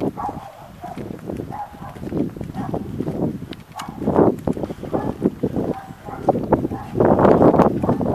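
Uneven rumbling and buffeting of wind on a handheld camera's microphone while the person walks, with footsteps on the pavement; it grows louder near the end.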